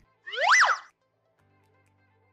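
A short cartoon-style sound effect: a single pitched tone, lasting under a second, that glides up and then back down.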